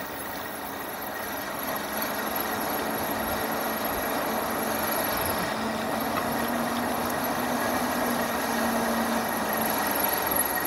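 Lectric XP 3.0 e-bike rolling downhill: steady tyre noise on the asphalt mixed with wind, growing gradually louder as the bike picks up speed.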